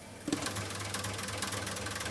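Relays of the Zuse Z3 replica clattering in a rapid, dense run of clicks over a steady low hum, starting about a third of a second in, as the machine carries out an addition.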